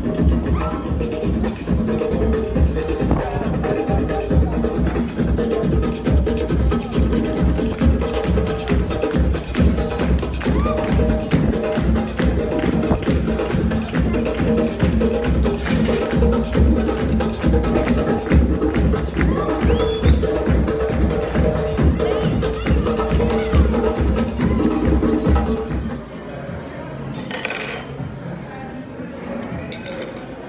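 A live band playing over a steady percussion beat. The music cuts off abruptly near the end, leaving quieter room sound.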